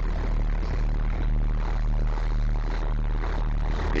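Ferry's engine running steadily as a low hum, under an even rush of wind and water.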